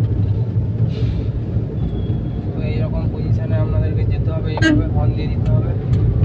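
Suzuki car's engine and road noise heard inside the cabin, a steady low rumble while driving slowly through town traffic. Faint voices come in around the middle.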